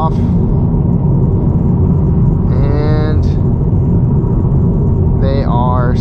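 Steady road and tyre noise inside the cabin of a 2022 Honda Civic cruising at highway speed, a low rumble. About two and a half seconds in, a short drawn-out hum from the driver's voice wavers in pitch for under a second.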